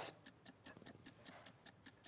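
Fast, even ticking of a countdown-clock sound effect, about six or seven light ticks a second, marking a timed price offer.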